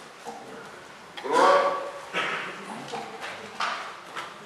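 Speech only: a man's voice speaking in short fragments, with pauses, in a large hall. The loudest word comes about a second in.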